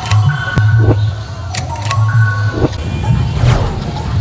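Music with a heavy, pulsing bass beat and sharp percussive hits repeating about once a second.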